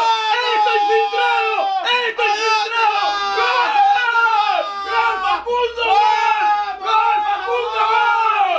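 Men yelling in celebration of a goal: loud, unbroken shouting with no words, the pitch repeatedly swooping down.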